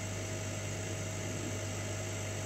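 Steady low electrical hum with a faint higher whine, unchanging, from the powered-on laser cutter and its surroundings.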